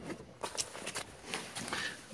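Faint rustling and a few light knocks as a person shifts about in a car and climbs out.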